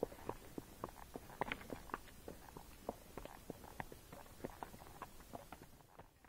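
Hoofbeats of a Tennessee Walking Horse on a dry dirt trail: an uneven run of soft thuds and crackles, several a second, with a slightly louder cluster about a second and a half in.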